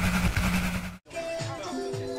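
A burst of TV-static noise with a low buzz, cut off suddenly about halfway through, followed by music with held notes.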